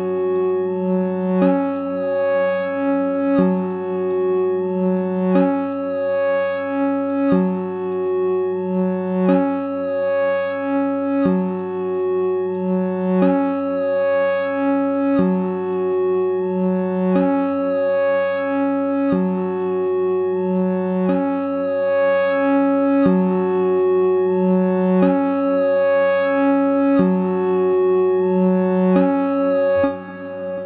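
Synthesizer patch from Logic Pro X's Alchemy additive engine, playing a phrase that repeats about every two seconds over a steady low drone. Its upper harmonics step in pitch within each phrase, and the patch has delay and reverb on it.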